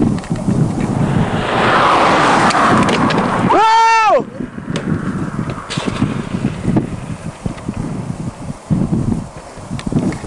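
Wind buffeting the microphone outdoors, swelling into a rushing noise for a couple of seconds, broken about three and a half seconds in by a brief yell that rises and falls in pitch.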